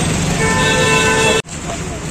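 A vehicle horn sounds one steady held note for about a second over street traffic noise and crowd chatter, then everything cuts off suddenly.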